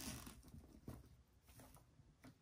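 Near silence with faint rustling and a few soft clicks from hands handling burlap fabric and plastic zip ties, fading after the first half-second.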